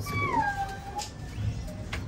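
A pet's high cry that falls in pitch, then holds briefly and stops about a second in.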